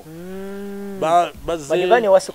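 A man's drawn-out 'eeeh' hesitation sound, held on one pitch for about a second, then more of his speech.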